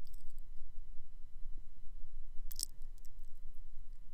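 A pause with no speech: a steady low hum runs under everything, with a few faint short clicks near the start and once more about two and a half seconds in.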